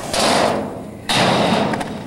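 Skateboard wheels rolling over concrete close by: a loud, rough rumble that comes in two surges, the second starting just after a second in.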